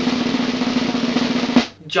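Snare drum roll: a fast, steady roll that stops suddenly with a final hit about a second and a half in.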